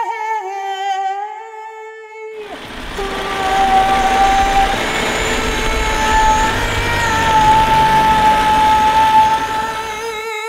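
A woman's unaccompanied voice singing long, steady held notes. About two and a half seconds in, a loud, even rumbling noise comes in under the voice and cuts off suddenly at the end.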